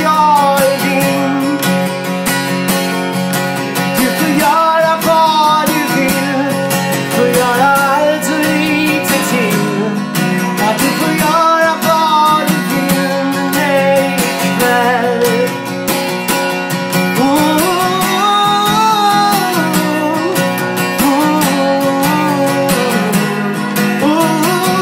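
A man singing a melody over a strummed acoustic guitar, in a live solo performance.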